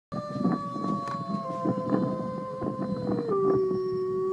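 A long canine howl, held on one note that slowly sinks in pitch, then steps down to a lower steady note about three seconds in.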